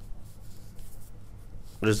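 Faint room noise with a few soft ticks, then a man starts speaking near the end.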